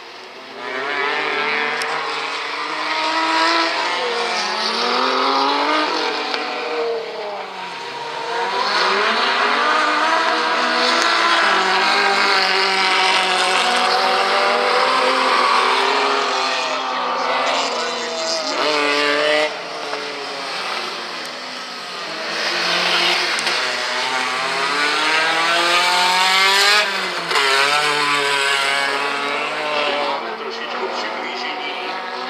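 Rallycross race car engines revving hard, the pitch climbing through each gear and dropping back when the drivers lift, over and over as the cars lap the track.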